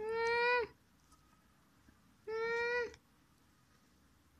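A baby's high, held vocal squeals: two long calls on a steady pitch, one at the start and one a little past two seconds in.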